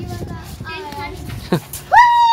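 Children's voices talking and calling out, ending in a loud, high-pitched call that rises and holds just before the end.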